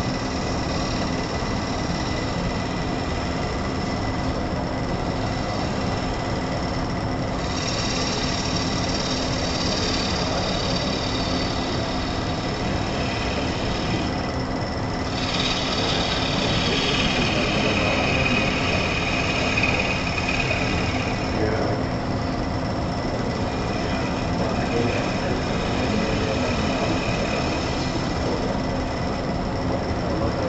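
A wood lathe running with a steady hum while a turning tool cuts the spinning wooden vase blank. The cutting adds a high hiss in three stretches of several seconds each, stopping and starting as the tool goes on and off the wood.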